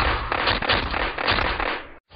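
Dense crackling noise made of many rapid small pops, loud at first and fading out near the end.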